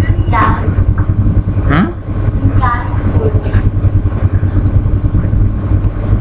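A steady low rumble fills the background, with a few faint, brief snatches of voices above it.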